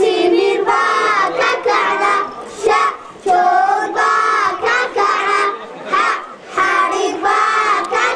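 A group of school children singing together, boys' and girls' voices in unison, in short phrases with brief breaks between them.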